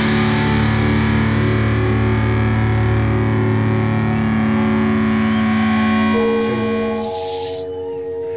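Live rock band with distorted electric guitar, held chords ringing out through effects. A single steady high tone comes in about six seconds in, and a short noisy burst follows about a second later as the chords fade.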